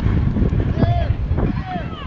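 Wind rumbling on the microphone, with spectators' short shouted calls about a second in and again near the end.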